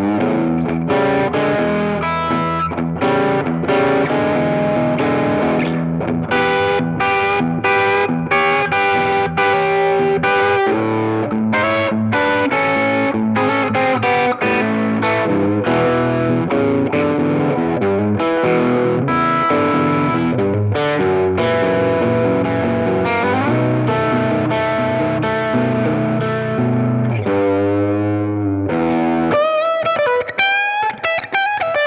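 Gretsch G6139T-CB Black Falcon center-block electric guitar with Filter'Tron pickups, played through an Ibanez TS9 Tube Screamer and an MXR Carbon Copy analog delay into a Fender '65 Deluxe Reverb amp: a continuous overdriven, punchy passage of riffs and single-note lines. Near the end, held notes wobble in pitch.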